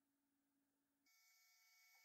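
Near silence: a pause in the narration with only very faint electrical hum.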